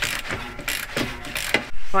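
Hand ratchet clicking in quick repeated strokes, about three or four a second, as a nut is run onto a bolt of a swivel seat base plate.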